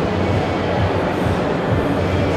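Steady background noise of a busy exhibition hall: an even low rumble with a murmur of noise.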